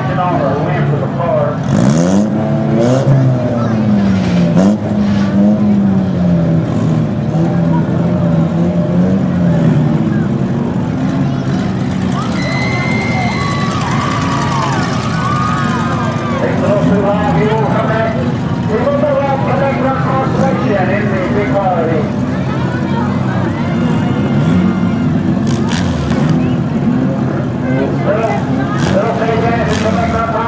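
Demolition derby cars' engines running, the pitch wavering up and down with light revving, under a crowd's voices.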